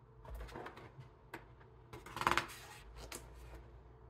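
Paper pages of a large, thick book being handled and turned: several short rustles, with the loudest page flip about two seconds in.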